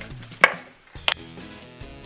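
Two sharp cracks over light background music: a loud one about half a second in with a short ring after it, and a smaller one about a second in.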